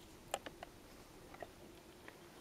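Faint, steady insect buzz, with a few small clicks; the sharpest comes about a third of a second in.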